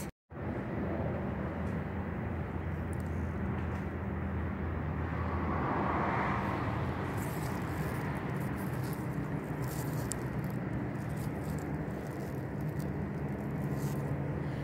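Steady low hum under a general background noise, swelling a little about halfway through, after a brief dropout at the very start.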